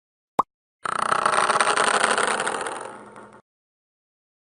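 A short animation pop sound effect, like a button tap, followed half a second later by a dense outro sound effect that swells in, fades away over about two seconds and cuts off suddenly.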